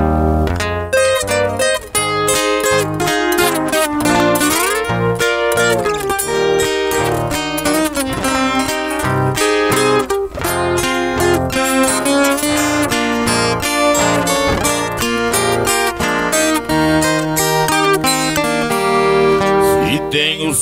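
Instrumental introduction of a moda de viola: a viola caipira picking the melody over an acoustic guitar's strummed chords and alternating bass notes, in a steady rhythm.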